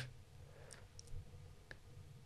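Quiet room tone in a pause, with a low steady hum and a few faint, scattered clicks.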